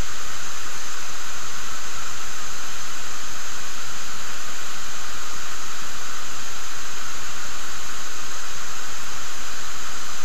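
Steady, even hiss of microphone recording noise, with no other sound standing out.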